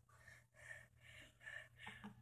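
Near silence: room tone with a few faint, soft breathy noises.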